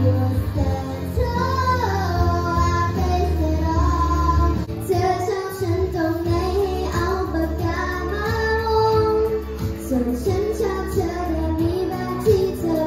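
A young girl singing a pop song into a handheld microphone, amplified, over accompaniment with a steady bass line; her sung notes are held and bent with vibrato.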